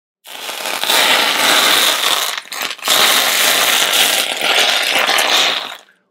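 A loud, rasping mechanical noise in two long stretches, broken briefly about two and a half seconds in and stopping just before six seconds.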